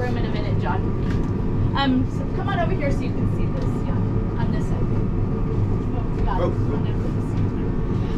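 A steady low hum of air-handling machinery in a steel compartment, running unchanged, with brief indistinct voices of people nearby a couple of seconds in and again near the end.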